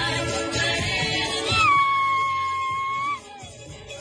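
Music for the Samoan taualuga dance, with group singing over a steady bass. About one and a half seconds in, a single high note is held for about a second and a half, sliding up at its start and down at its end, and then the music drops much quieter.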